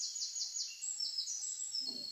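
A small songbird singing faintly: a quick run of falling high whistled notes, about five a second, followed by a few longer, steadier high notes.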